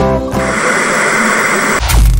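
Guitar outro music stops about a third of a second in, giving way to a steady hissing whoosh sound effect, then a deep boom hit near the end as a logo animation begins.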